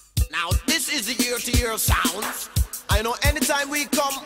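Reggae track just under way: a deejay toasting in quick rhythmic phrases over a steady kick drum at about three beats a second.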